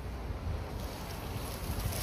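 Wind buffeting the microphone: a steady, uneven low rumble, with a brighter hiss coming in about halfway through.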